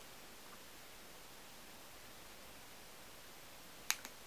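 Faint steady room hiss with no speech, broken by one sharp click near the end.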